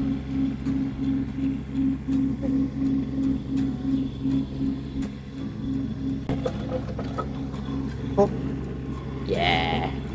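Kubota KX015-4 mini excavator's diesel engine running steadily with a regular pulsing beat about three times a second. There is a sharp knock about eight seconds in, and near the end a dog gives a short high whine.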